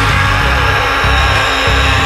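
Loud, aggressive heavy metal music.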